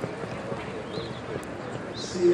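Steady outdoor show-ring background noise with faint distant voices and a few short high chirps.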